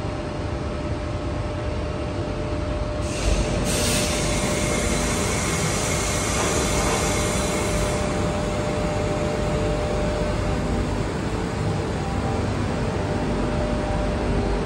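A Tangara double-deck electric train standing at an underground platform with its doors open, its onboard equipment humming steadily with one held tone. About three seconds in there is a thump, then a loud hiss of released compressed air from the train's air system that runs for about five seconds and stops.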